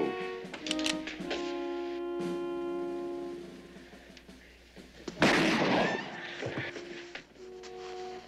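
Dramatic orchestral music with sustained brass chords, then a single sharp revolver shot about five seconds in that stands out as the loudest sound. Music returns quietly near the end.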